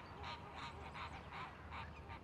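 Waterbirds calling faintly in the background, a quick run of short calls repeated a few times a second.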